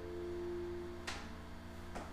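Last strummed chord of an acoustic guitar ringing out and fading away, then a light knock about halfway through and another near the end as the guitar is handled.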